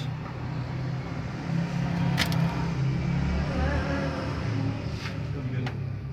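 A motor vehicle engine running close by: a low, steady rumble that swells in the middle and eases off again. A few small sharp clicks, about two, five and nearly six seconds in, come as the wire is handled.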